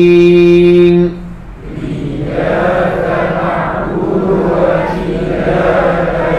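A man's voice in Quranic recitation holds a long drawn-out note that ends about a second in. Then a group of voices recites together in unison, repeating the passage after him in a tajwid lesson.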